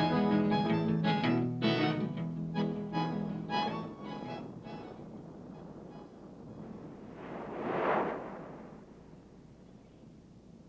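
The last bars of a folk ballad with acoustic guitar die away over the first five seconds. Then a single wave of surf surges in, swelling and falling away about eight seconds in.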